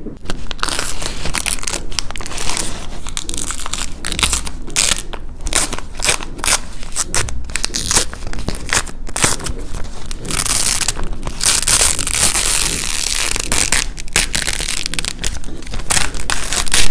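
A thin plastic sheet coated in layers of dried paint being handled, crumpled and peeled apart close up: dense, irregular crinkling and crackling, heaviest about ten to thirteen seconds in.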